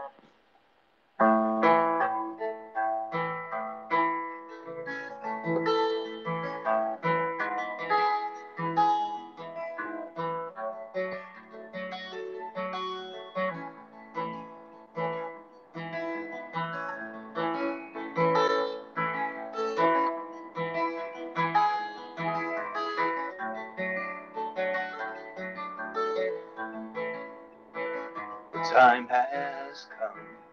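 Solo acoustic guitar playing the instrumental intro of a song: picked notes ring in a steady, flowing pattern, starting about a second in after a short silence.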